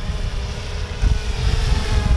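3DR Solo quadcopter's rotors humming steadily in flight some distance away, with wind rumbling on the microphone.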